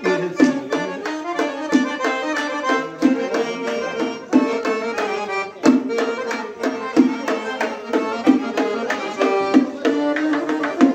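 Live folk dance music: an accordion playing sustained chords and melody over rhythmic strokes of hand-struck frame drums (doira).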